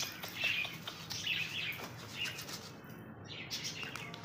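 Pigeons flapping their wings as they crowd onto grain scattered on the floor, with a run of short, high, separate sounds in the first two seconds that thin out toward the end.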